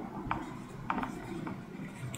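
Dry-erase marker writing on a whiteboard: a few short squeaky strokes about half a second apart as the letters are drawn.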